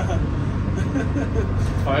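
Detroit Diesel 6-71 naturally aspirated two-stroke inline-six in a 1978 Crown school bus, heard from inside the cabin as a steady low drone while the bus rolls slowly.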